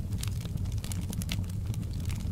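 Wood fire burning in a fireplace: quick, irregular crackles and pops from the burning logs over a steady low rumble of the flames.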